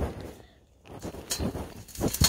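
Metal arbor sections being pushed together: a knock at the start, then faint scraping with a couple of small clicks about a second and a half in as the panel slides down onto its post.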